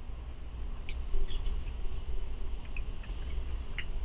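Faint, scattered clicks and light rubbing of the plastic Polar Pro Katana handheld tray and grip being handled, the loudest click about a second in.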